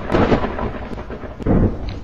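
Thunder rumbling with a hiss of rain, swelling about one and a half seconds in.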